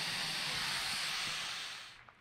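Steady high hiss of the Boom XB-1's three GE J85 turbojets idling as the aircraft taxis, fading out near the end.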